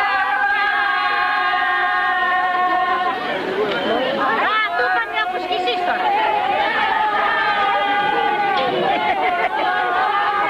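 A group of villagers singing a traditional folk song together in long, steady held notes. The singing breaks off for a few seconds in the middle into loud crowd chatter, then resumes.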